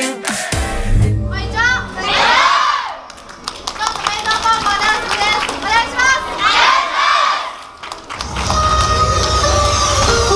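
Groups of young voices shouting together in high, loud calls, twice. About eight seconds in, upbeat electronic dance music with a steady heavy beat starts.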